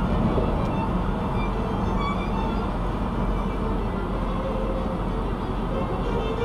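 Steady road noise of a car at highway speed, heard inside the cabin, with faint background music over it.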